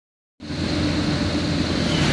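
Steady engine and road noise of a vehicle driving along an asphalt road, starting abruptly a moment in.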